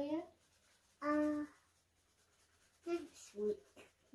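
Voices in a small room: a spoken phrase trailing off at the start, one short held vocal sound on a level pitch about a second in, and a few brief spoken sounds near the end.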